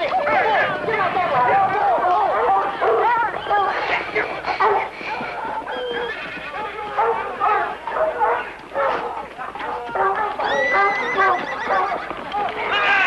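Horses neighing and hooves clattering amid several men shouting over one another, with a long high neigh near the end.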